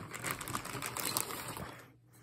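A clear plastic bag crinkling as hands dig through it, with small wooden game pieces clicking together inside; it dies down near the end.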